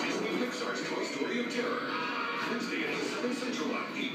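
A television playing in the room: music with voices.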